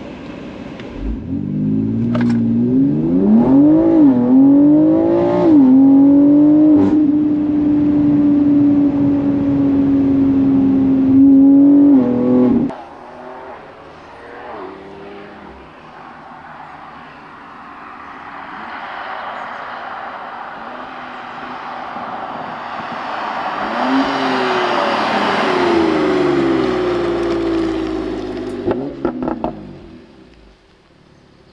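The twin-turbo S58 inline-six of a BMW X3 M tuned to about 750 hp, heard inside the cabin, accelerating hard: its pitch climbs and drops at quick upshifts, then holds a steady high note until it cuts off suddenly. Then, heard from the roadside, a car's engine and tyre noise swells as it approaches and passes.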